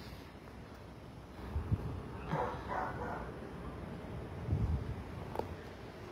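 Dogs barking a few short times, faintly, with a low rumble a little later.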